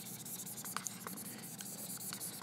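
Dry-erase marker scribbling quickly back and forth on a whiteboard: a faint, scratchy rubbing made up of many small ticks.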